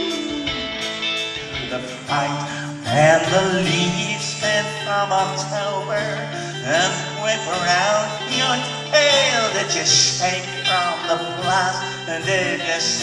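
Live rock band playing: a flute melody with bending, trilling notes over guitar, keyboards, bass and drums, heard from the audience in a concert hall.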